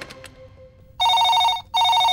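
Electronic office desk phone ringing: two trilling rings close together, starting about a second in.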